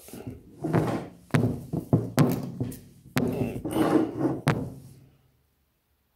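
Handling noise from a phone being set down and adjusted on a wooden table: rubbing and scraping with several sharp knocks and thunks against the tabletop. It stops about five seconds in.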